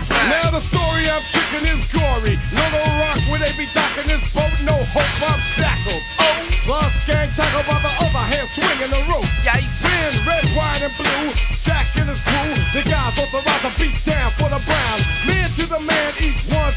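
Hip hop track playing: a rapper's vocal over a beat with deep bass and drums.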